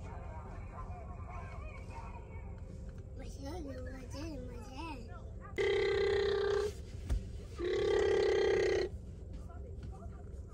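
A car horn honks twice, each steady blast about a second long, with about a second between them, over a steady low rumble.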